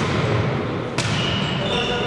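A volleyball struck twice during a rally, two sharp slaps about a second apart, echoing in a sports hall over players' voices.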